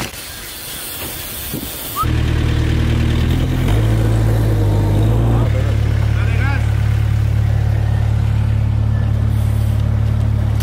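A construction site machine's engine running steadily, loud and low, cutting in abruptly about two seconds in, with a slight shift in its pitch twice before it settles.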